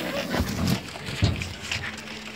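Emotional voices of people embracing: crying and excited exclamations close to the microphone, with two dull thumps from jostling early and about midway.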